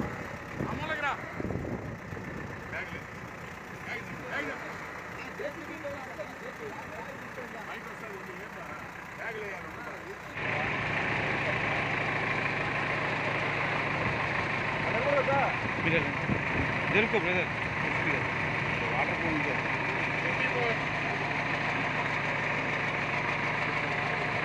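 Backhoe loader's diesel engine running steadily, with men's voices talking around it. About ten seconds in the sound steps up abruptly to a louder, closer engine hum.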